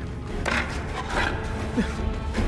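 Film soundtrack: quiet background music of low sustained tones over a low rumble, with a couple of short noisy sound effects.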